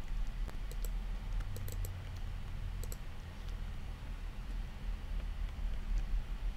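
A handful of scattered, sharp clicks of a computer mouse, over a low, steady hum.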